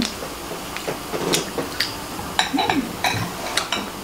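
Metal forks tapping and scraping on a plate as pieces of brownie are cut and picked up: a scattered run of light clicks.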